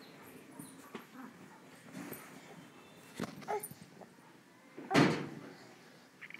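A baby's short vocal sounds, a few brief grunts and squeals. One falls in pitch about three and a half seconds in, and the loudest comes about five seconds in.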